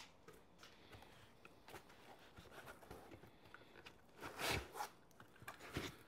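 Faint rustling and light scraping of packing material and cardboard as parts are lifted out of a shipping box, with a louder rustle about four and a half seconds in and a short one near the end.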